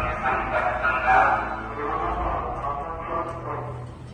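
Indistinct, overlapping voices of recorded launch-control radio chatter playing over a low rumble, the voices fading toward the end.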